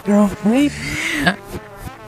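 A human voice played backwards: garbled, unintelligible vocal sounds with swooping pitch.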